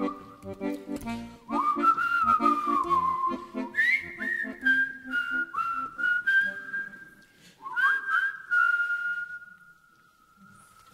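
Closing bars of a Celtic folk tune: a whistle melody with notes that slide up into pitch, over a rhythmic accompaniment. The accompaniment drops out about seven seconds in, leaving the whistle on a long held final note that fades away.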